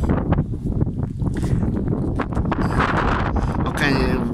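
Wind buffeting a phone's microphone outdoors, a steady low rumble.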